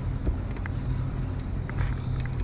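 Steady low engine hum, with a few faint clicks and taps over it.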